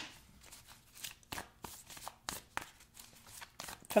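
Tarot cards being handled and shuffled: a run of small, irregular clicks and flicks of card stock.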